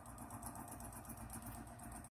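Faint, steady mechanical hum with a fast, even pulsing, like a small machine running.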